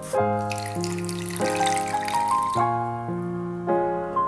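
Background piano music, with water poured into a saucepan of sugar for about two seconds, starting about half a second in.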